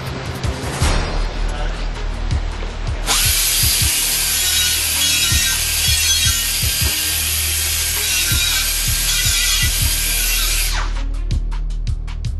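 Handheld air-powered grinder running steadily against a metal fan blade to grind out a defect. It starts suddenly about three seconds in, runs for about eight seconds as an even hiss, and cuts off shortly before the end, with background music throughout.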